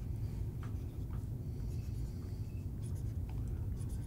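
Marker pen writing on a glass lightboard: a series of short strokes as small arrows are drawn onto a diagram, over a steady low hum.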